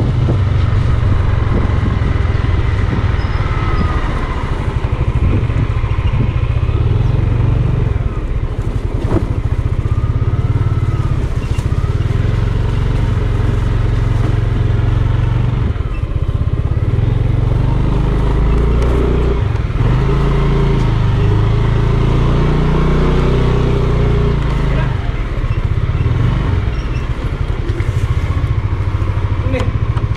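Yamaha Aerox 155 scooter's single-cylinder engine running under way at low road speed, under a heavy, steady low rumble.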